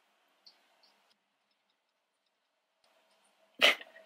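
Near silence for about three and a half seconds, then near the end one short, sudden vocal outburst from a woman, a burst of laughter or an exclamation.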